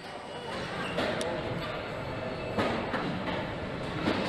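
Aircraft assembly hall ambience: a steady echoing din with sharp metallic knocks about a second in, around two and a half seconds, and at the end, over indistinct voices.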